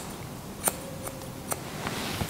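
Barber's hair-cutting scissors snipping through a section of hair held between the fingers: a few crisp, short snips under a second apart.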